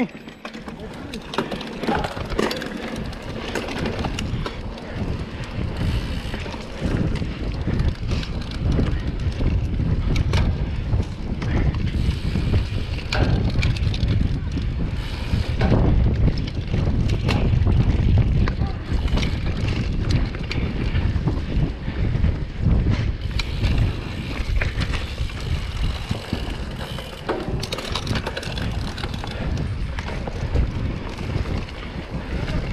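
Mountain bike ridden fast on dirt singletrack, heard from a helmet camera: steady wind buffeting the microphone, with frequent rattles and knocks as the bike runs over roots and bumps.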